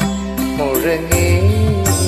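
Karaoke backing music during an instrumental stretch of the song: a gliding melody instrument over a sustained bass and a light beat.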